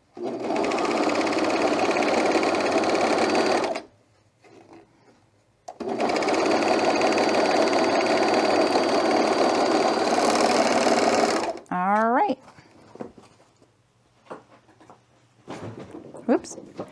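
Juki MO-1000 serger stitching through fabric in two steady runs, the first about four seconds, the second about six, with a short stop between.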